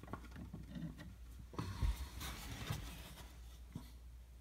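Hard plastic graded-card slabs being handled: faint, scattered clicks and rubbing as a slab is picked up and held in the hands.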